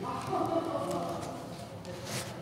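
A faint voice murmuring low in a meeting room, too soft for the words to come through.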